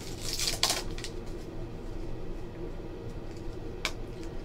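Foil trading-card pack wrapper crinkling as it is torn open, loudest in the first second, followed by quieter handling of the cards and a single sharp click near the end.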